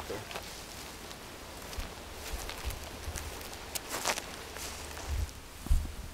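Footsteps and rustling of brush as people walk a grassy scrub trail, with scattered crackles around four seconds in and a few low thumps near the end.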